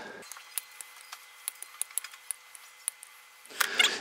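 Faint, scattered light clicks and ticks of small flush cutters and a cut pin-header strip being handled on a workbench cutting mat.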